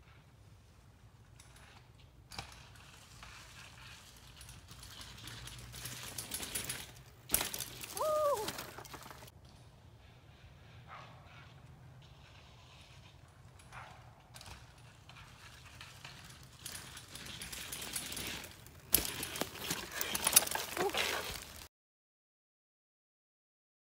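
Mountain bike rolling down a leaf-covered dirt trail, its tyres crunching through dry leaves. It comes past twice, loudest about 8 seconds in and again near the end, with a short squeal during the first pass.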